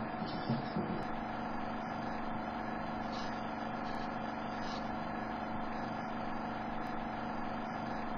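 A steady hum with hiss, with a few faint drum hits in the first second.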